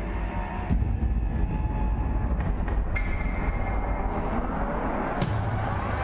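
Title-sequence music and sound design: a deep, steady rumbling drone with three sharp hits, and a rising whoosh building in the second half.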